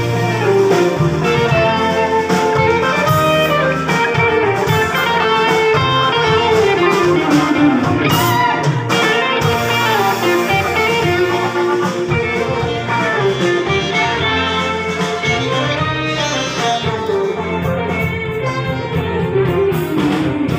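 Live band playing kuratsa dance music: electric guitar lead over bass, drums and keyboard, continuous and loud.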